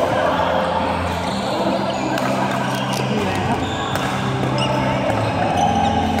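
Badminton rally in a large indoor hall: rackets strike the shuttlecock with sharp clicks several times, over a steady din of voices and play from the other courts.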